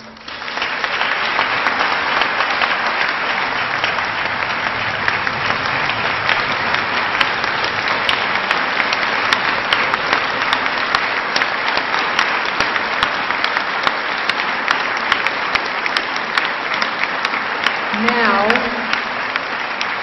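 Applause from a large audience in a hall, starting within the first second and going on steadily. A voice is heard briefly near the end.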